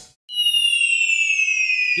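Edited-in sound effect: several high whistle-like tones gliding slowly downward together, coming in just after a brief cut to silence.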